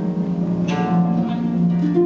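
Concert harp played solo: plucked notes ringing on over one another, a low bass line under a higher melody, with a crisp pluck about a second in.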